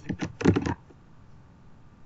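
Computer keyboard keystrokes: a quick run of five or six key taps in the first second, typing a word, then quiet room tone.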